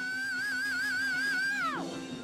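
A male rock singer holds a long, high belted note with a steady vibrato, then lets it fall away sharply near the end, over a steady low note held by the band.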